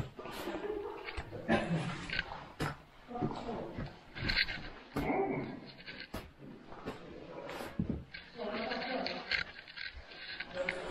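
A caver climbing down a chain over rock: irregular sharp clinks and knocks with scraping, and short grunts and hard breathing from the effort.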